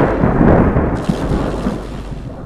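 Loud rumbling, crackling sound effect for a video transition, like thunder or an explosion, gradually fading.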